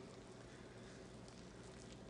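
Faint, steady whisking: a wire whisk beating flour and water together into a batter in a bowl.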